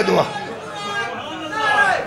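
Speech: a man's voice finishing a few words, then a quieter lull with faint voice before he speaks again.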